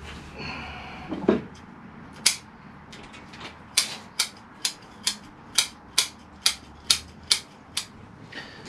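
Scissors snipping through the roots of a beech bonsai during root pruning. There are a couple of single snips early on, then a steady run of about ten sharp snips, roughly two a second, from about four seconds in.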